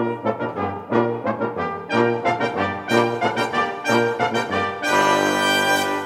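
A brass quintet (trumpets, trombone and tuba) playing a run of short, detached chords, then a loud held final chord for about the last second.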